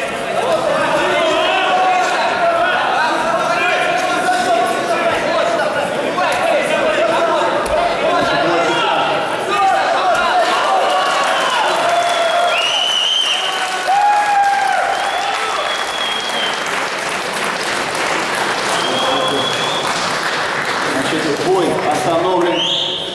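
Spectators in a hall shouting and cheering a fight, with clapping. A few loud, high-pitched calls stand out about halfway through.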